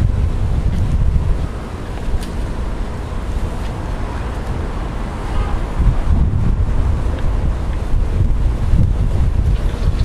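Wind buffeting the microphone: a loud, uneven low rumble that eases off for a few seconds and then gusts up again.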